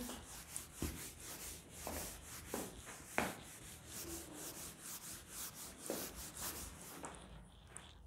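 A whiteboard duster rubbed back and forth in quick strokes, wiping marker writing off the board, with a few soft knocks. The strokes stop about a second before the end.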